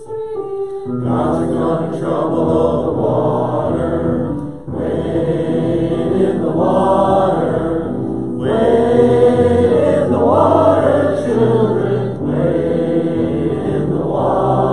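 Congregation of men and women singing a hymn together, coming in about a second in after a single line of melody, and singing in phrases of about three and a half seconds with brief breaks between them.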